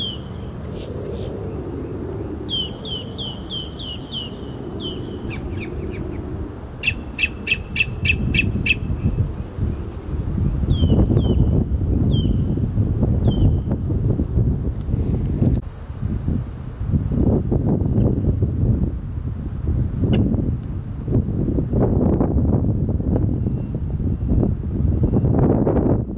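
Birds calling: a string of short, falling chirps, then a quick run of about eight sharp ticks some seven seconds in. From about ten seconds in, a louder, gusting low rumble takes over, with a few more chirps above it.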